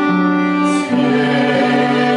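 Classical singing of a Polish Christmas carol with piano, clarinet and violin accompaniment, held notes changing about a second in, with a brief hiss of a sung consonant just before.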